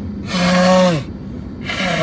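A man blowing his nose into a tissue twice, two long blows about a second apart, the first the louder, each ending in a voiced note that drops in pitch; he has a head cold. Steady car and road noise runs underneath.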